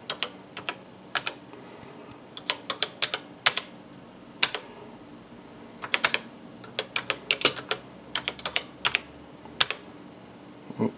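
Keystrokes on a Tandy Color Computer keyboard, typed in short irregular bursts of sharp clicks over a faint steady hum.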